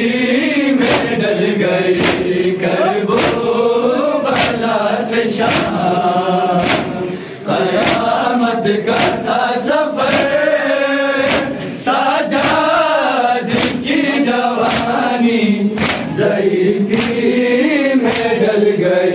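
Men's voices chanting an Urdu noha (lament) together, with sharp chest-beating slaps of matam struck in a steady rhythm, roughly one a second.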